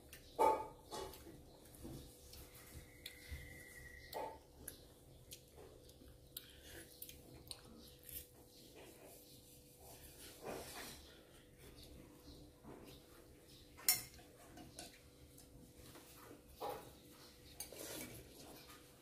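Quiet sounds of two people eating noodle soup: scattered light clicks of chopsticks and spoons against bowls, with a sharper clink about 14 seconds in, over a faint steady hum.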